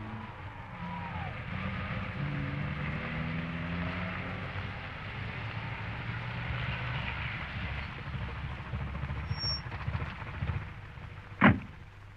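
Old radio-drama sound effect of a car engine running, a steady low drone, with a single sharp knock near the end that is the loudest sound in it.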